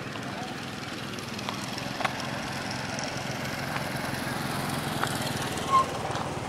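Steady drone of a motor vehicle engine on the road, growing a little louder toward the end, with a few faint clicks and a short high-pitched blip near the end.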